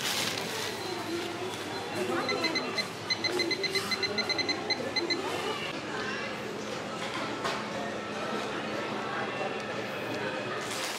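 A quick run of about twenty short electronic beeps from a supermarket checkout terminal, several a second, over a background of voices and store noise.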